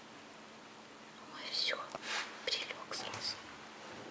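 Soft whispering in a few short, breathy bursts, starting about a second and a half in.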